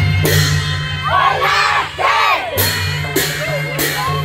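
Traditional Newar procession music for a Lakhe dance, with cymbal clashes beating one to two times a second over a steady low drone of drums. The crowd shouts and whoops loudly around the middle.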